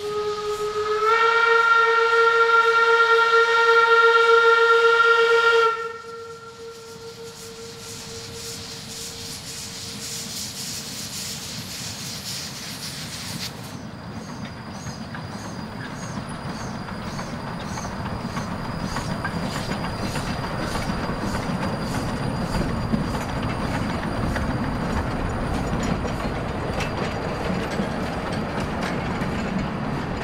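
Amemiya No. 21 narrow-gauge steam locomotive sounds its whistle, one long steady blast of about five seconds, then steam hisses as it gets under way. It then runs along the track, its clatter over the rails growing louder as it draws near.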